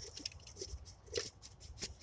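Faint handling noise: a few soft rustles of a shop towel rubbing close to the microphone, with a sharp little tick near the end.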